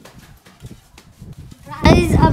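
Quiet stretch with faint soft knocks, then a boy's voice starts up loudly near the end.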